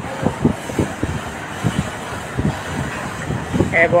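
Steady rumbling background noise with scattered short knocks, and a voice calling out briefly near the end.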